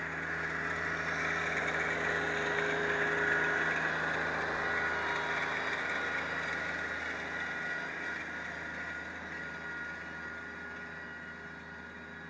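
Rural King RK24 compact tractor's diesel engine running steadily as it pulls a pine straw rake through leaf litter. It grows louder as the tractor passes close, then fades as it drives away.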